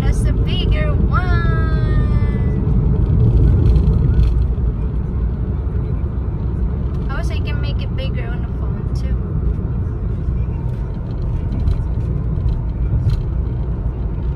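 Car interior while driving: a steady, low road and engine rumble in the cabin. A person's voice rises and falls in the first couple of seconds and sounds again briefly about seven seconds in, with a few light clicks later on.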